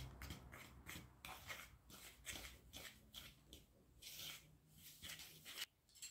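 Faint, rhythmic scraping of a metal fork stirring egg into flour in a bowl, about three strokes a second, stopping shortly before the end.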